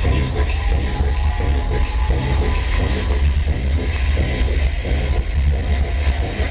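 Loud electro dance music from a live DJ set played over a club sound system, with a heavy, steady bass.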